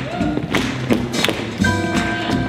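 Live swing band playing for lindy hop dancing, with a walking upright bass and sharp drum strokes every few tenths of a second, plus heavy thuds on the beat.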